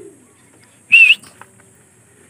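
A single short, loud, high whistle about a second in, its pitch wavering slightly.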